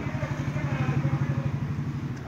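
Small motorcycle engine passing close by, its rapid, even putter growing louder to a peak about a second in, then fading.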